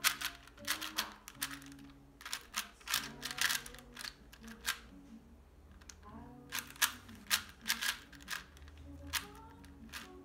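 A 4x4 puzzle cube being turned quickly by hand: plastic clicks in rapid clusters, with a pause about halfway through. Faint background music plays underneath.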